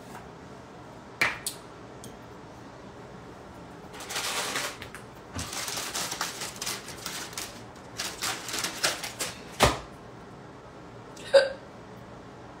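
Small objects being handled close to the microphone: a few light clicks, then bursts of rustling in the middle, and two louder clicks near the end.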